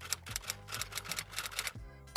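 Typewriter sound effect: a quick run of key clicks, several a second, as a title is typed out letter by letter, over background music.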